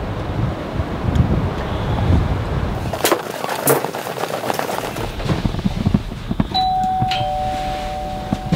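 Apartment doorbell chime: two steady tones, a higher one and then a lower one about half a second later, sounding near the end and ringing on. Before it, wind rumbles on the microphone outdoors, then a few footsteps and knocks sound in a corridor.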